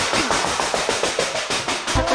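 A fast roll of percussive strikes, about ten a second, kept up without a break.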